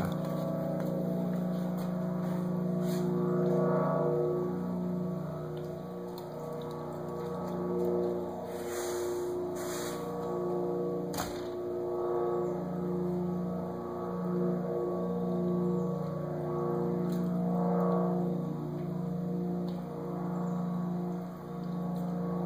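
Blimp's engines droning overhead: a steady low hum whose pitch wavers slowly up and down, with a brief rustle about nine seconds in.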